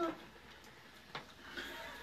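Quiet room tone broken by a single sharp click about a second in, with faint voices near the end.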